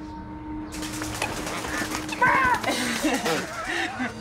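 A bird takes off with a rapid run of wing flaps starting about a second in, followed by people's exclamations and laughter.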